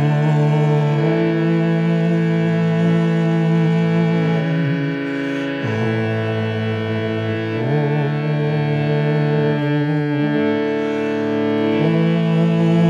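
Harmonium playing sustained reedy chords that change every couple of seconds, with a man's voice chanting along on long held notes.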